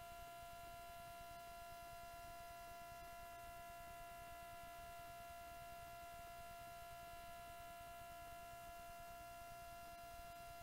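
Near silence with a faint, steady electrical whine of several fixed pitches over low hiss, unchanging throughout.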